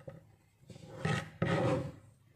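Kitchen knife cutting through fresh turmeric root on a plastic cutting board, with two rasping strokes in the second half, the second louder.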